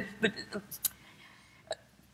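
A woman's voice trailing off in a few short hesitant sounds, then a pause in quiet room tone broken by two faint clicks.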